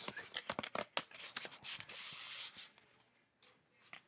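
Paper and card being handled: a quick run of crackles and taps in the first second, then a brief rustle of paper sliding, dying down after about two and a half seconds.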